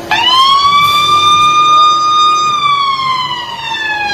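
A siren sounding one loud wail: it starts abruptly, rises quickly in pitch, holds steady for about two seconds, then slides slowly down.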